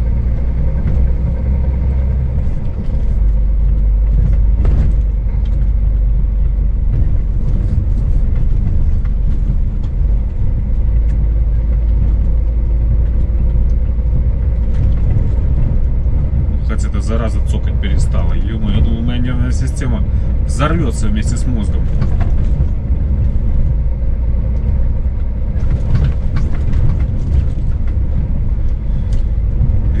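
Steady low rumble of a Scania S500 truck's engine and tyres heard inside the cab while driving on a patchy road.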